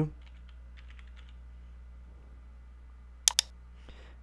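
Computer keyboard typing: a run of light keystrokes in the first second or so. A little over three seconds in comes a louder, sharp double click.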